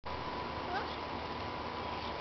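A Boston terrier–French bulldog mix puppy gives one short, rising squeak about a second in, over a steady background hiss.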